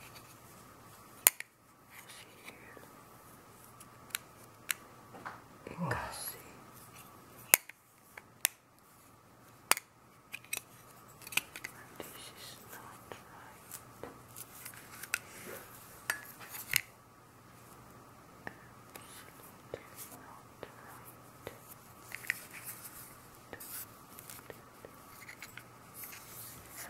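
A plastic makeup powder compact being handled: sharp clicks and taps of the case and its hinged lid, with light scratching and rustling as protective film is peeled off the mirror. The loudest clicks come about a second in and about seven and a half seconds in.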